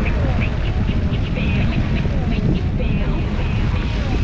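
Wind buffeting the microphone of a camera moving along a trail, a steady rumble, with short high chirps scattered over it.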